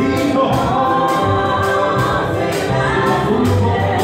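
Live gospel worship song: a man singing into a microphone over a band with a steady beat, with other voices singing along.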